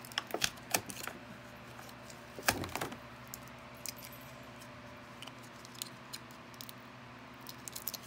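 Small plastic toy pieces clicking and clear plastic packaging crinkling as fingers work tiny doll bottles free. The loudest click comes about two and a half seconds in, and the clicks thin out over the second half.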